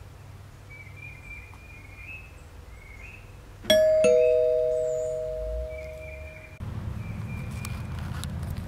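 Two-tone ding-dong doorbell sound effect: a higher chime about three and a half seconds in, then a lower one just after. Both ring out and cut off suddenly a couple of seconds later.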